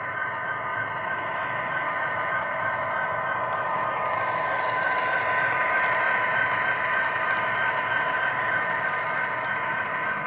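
Model diesel locomotive and its grain hopper cars running past close by on layout track: a steady running sound with several held tones, growing louder to about six seconds in and easing a little after.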